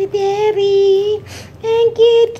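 A high-pitched voice singing long, steady notes: one held note, a short break, then another begins near the end.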